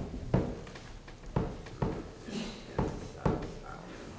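Frame drum struck in a slow heartbeat rhythm: pairs of low beats, the second following the first by about a third of a second, with each pair coming about every second and a half.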